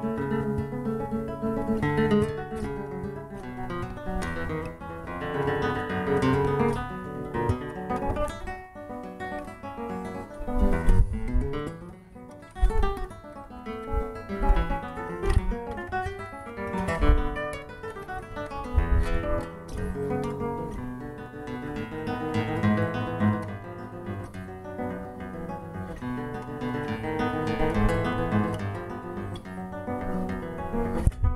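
Solo classical guitar played fingerstyle: a continuous piece of plucked melody over bass notes, with a few louder low accents in the middle.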